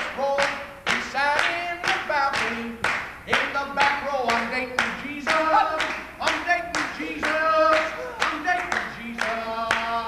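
Steady rhythmic handclapping, about two claps a second, with voices singing and holding long notes over the beat.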